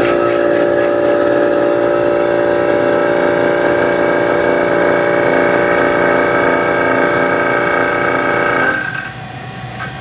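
Vacuum pump running with a steady, loud, many-toned hum as it evacuates an air-conditioning coil for a vacuum decay leak test. It cuts off about nine seconds in, once the vacuum has been pulled and the test moves to its stabilize stage.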